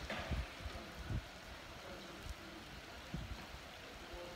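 Faint steady hiss of light rain, with a few soft low thumps near the start and about a second in.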